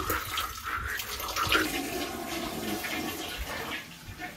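Water rushing and gurgling in a toilet bowl, starting suddenly and dying away near the end.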